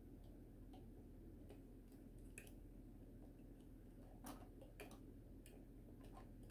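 Near silence over a low room hum, broken by faint scattered small clicks of plastic parts as the jointed excavator arm of a 1/35 scale plastic model is moved by hand. The clearest click comes about four seconds in.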